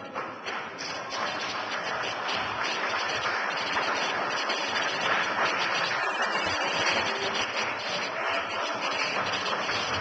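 Crowd clapping and cheering, building over the first couple of seconds and then holding steady: the public reacting loudly enough to disturb the sitting.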